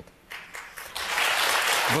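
Studio audience applauding, beginning faintly just after the start and swelling to full strength about a second in.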